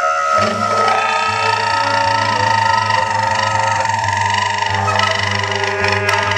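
Quartet of tenor saxophone, trumpet, bass clarinet and cello playing long, overlapping held tones over a steady low note.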